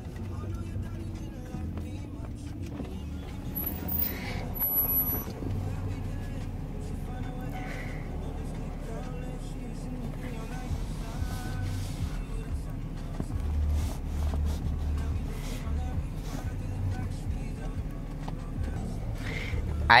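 Car engine idling, heard from inside the cabin as a steady low hum, with music playing low and faint voices in the background.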